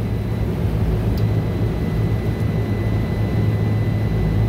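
Steady low machinery hum of rooftop refrigeration and air-conditioning units running, with a faint steady high-pitched beep from the multimeter's continuity tester held on the compressor windings.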